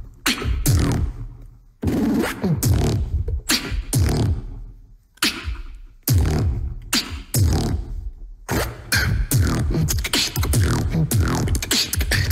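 Solo beatboxing into a handheld microphone: sharp kick and snare hits over low bass sounds that slide downward in pitch. Broken by a few short pauses, the pattern grows denser and faster over the last few seconds.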